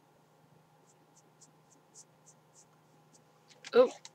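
A fingertip rubbing dark purple eyeshadow onto the skin of a forearm: a series of about eight faint, soft rubbing strokes. A short spoken 'oh' comes near the end.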